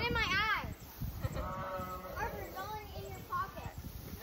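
Children's high-pitched voices, opening with a quavering call near the start and chattering after it.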